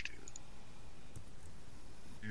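A few faint, sharp clicks, one right at the start and two small ones just after, over a steady low hiss.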